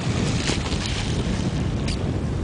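Steady wind noise buffeting the microphone, a low rumbling rush without any distinct tone.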